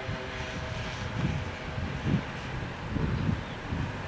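Outdoor rumble of distant road traffic, with wind buffeting the microphone in irregular low gusts.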